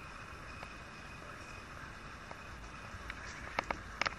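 Faint steady outdoor background hiss, with a few short, sharp calls near the end, heard as jackdaws calling, which the young jackdaw hears.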